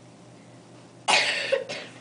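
A person coughing: a short burst of two or three coughs about a second in, loud against the quiet room.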